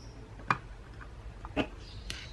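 Plastic punch head of a We R Memory Keepers Planner Punch Board being clicked into its slot. There is a sharp click about half a second in and a softer one about a second later.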